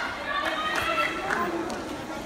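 Indistinct voices talking in a large hall, with a few light knocks spread through it.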